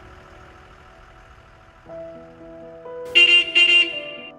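Two short, loud honks of a school bus horn, about half a second apart, near the end, over soft film-score music with held notes.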